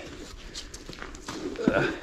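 Footsteps on gravel, with scattered light scuffs and clicks.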